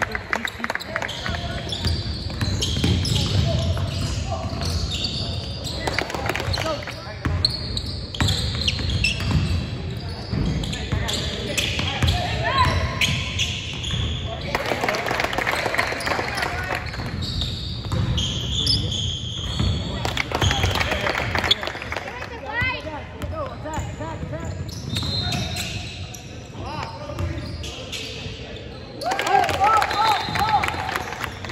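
Basketball game on a hardwood court: a ball being dribbled and bounced, sneakers squeaking, and players and spectators calling out, echoing in a large gym. The voices grow louder near the end.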